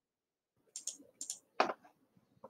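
Computer mouse clicking: two quick pairs of sharp clicks, then a single louder click about a second and a half in.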